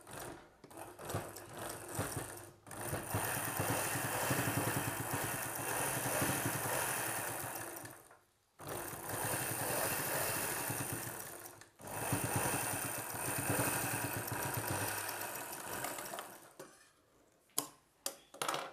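Domestic sewing machine stitching a seam through velvet blouse fabric: a few short starts, then three long runs of steady, rapid needle strokes separated by brief stops.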